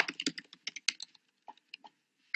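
Faint, irregular clicking of keys being typed on a computer keyboard, a quick run of clicks in the first second, then a few scattered ones.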